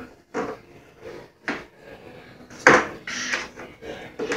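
A plastic toy scoop knocking and clattering against a wooden desk and a holder fixed to it: several separate knocks, the loudest about two and a half seconds in.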